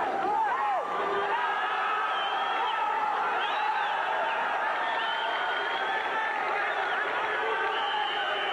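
Spectators in a sports hall, many voices shouting and calling out at once, with scattered cheers, during a wrestling bout.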